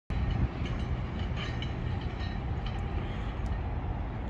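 Steady low rumble of background noise, with no distinct event standing out.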